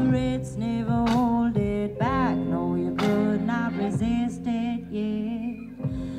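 A hip-hop/soul band and symphony orchestra playing a slow, calm song live, with a voice singing long, wavering melodic lines over drums, guitar and sustained orchestral notes.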